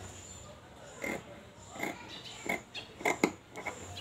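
Fabric shears snipping through cotton cloth, a series of short crunchy cuts a half-second or so apart.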